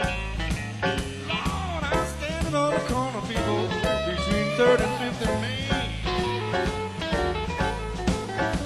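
Live electric blues band playing: a lead electric guitar solo with bent, sliding notes over bass and drums.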